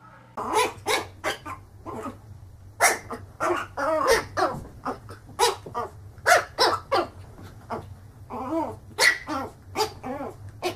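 A small fluffy puppy barking at its own reflection in a mirror: short, high yaps repeated two or three times a second.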